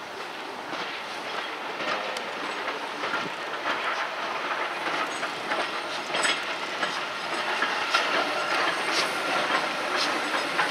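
Steam train led by a maroon coach, with LMS Stanier 8F 48151 behind it, rolling slowly towards and past the platform. Wheels click over the rail joints and it grows louder as it comes near, with some hiss of steam.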